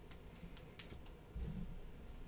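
Basketball trading cards being handled: light clicks and snaps of card stock as cards are slid off and flipped through a stack, with a soft low bump about one and a half seconds in.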